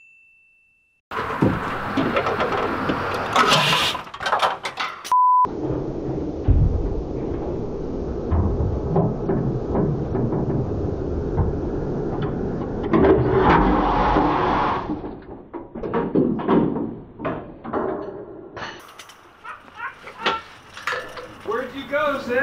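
Ford 7.3 Power Stroke V8 diesel cranking over on the starter without firing, for about ten seconds starting roughly five seconds in. The injectors on one bank are unplugged and a glow plug is out, so it turns over without starting while blowing oil out of the glow-plug hole. A short beep comes just before the cranking.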